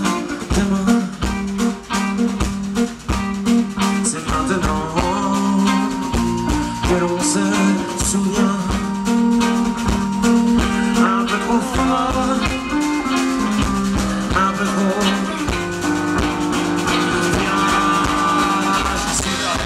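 Live folk-rock band playing an instrumental passage with accordion, clarinet, banjo, guitars and drum kit over a steady drum beat, with one long held high note through the middle.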